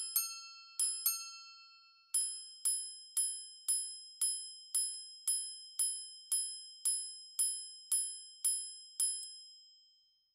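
Patek Philippe Ref. 5078G minute repeater striking its steel gongs. It opens with two high-low quarter double strikes, then gives fourteen single high minute strikes about two a second, the last ringing out near the end.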